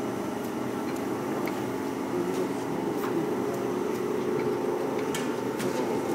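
DAUB Slim vacuum dough divider running: a steady hum from its built-in vacuum pump, which sucks the dough into the measuring pocket. A few faint clicks sound about halfway through and again near the end.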